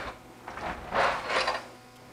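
A house door being opened: a few short scraping, rubbing noises, loudest about a second in.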